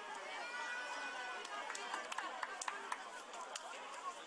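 Distant children's voices calling and chattering outdoors, with scattered sharp taps and knocks: the ambience of children at play.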